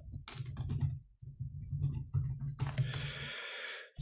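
Computer keyboard typing: a quick run of keystrokes as a terminal command is entered, picked up by a laptop or headset microphone over a low hum, with a brief hiss near the end.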